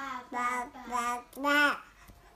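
Baby babbling in a sing-song voice: four drawn-out syllables, the last one the loudest.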